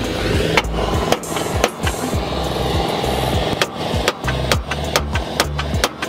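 Hammer striking metal suspension parts in a car's front wheel well: a run of sharp, irregular blows, coming faster in the second half, over background music with a beat.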